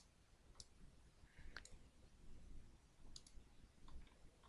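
Near silence with a handful of faint computer mouse clicks, about a second apart, two of them close together a little past three seconds in.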